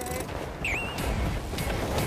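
Wind rumbling on the microphone and water noise aboard a small sailboat during a jibe, with a brief high squeak that dips and rises in pitch under a second in.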